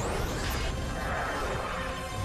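Animated transformation sound effects: a rising whoosh that breaks into a dense, shimmering crash-like burst of magical energy with a low rumble underneath, mixed with music.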